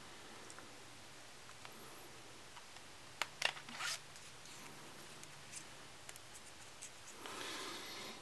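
Quiet room tone with a few small clicks and rustles of a smartphone being handled, clustered about three to four seconds in, and a soft rushing noise just before the end.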